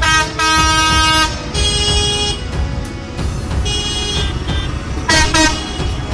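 Tractor horns honking in several blasts of different pitch: a long one at the start, two more in the middle, and two quick toots near the end, over the low rumble of tractor engines.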